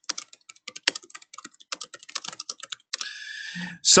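Typing on a computer keyboard: a quick, uneven run of key clicks for about three seconds, then a short steady hiss near the end.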